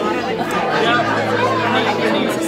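A group of people chatting at once in a room, several voices overlapping with no single clear speaker. Soft background music with long held notes runs underneath.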